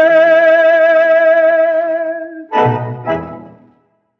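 A tango orchestra holds a long final note with vibrato, then closes with two short chords about half a second apart, the second softer: the 'chan-chan' ending typical of tango.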